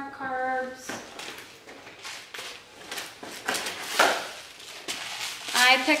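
Grocery packaging being handled on a kitchen counter: cardboard boxes and plastic wrappers rustling, scraping and knocking in a string of short, irregular sounds.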